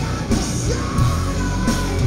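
Live heavy metal band playing loud, with distorted guitar, drums and a woman's vocal held over the top.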